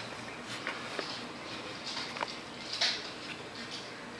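Light clicks and scrapes of fingertips and a small expanded bullet fragment on the stainless steel platform of a digital pocket scale as the fragment is picked up: a handful of short ticks spread out, with brief soft rustles.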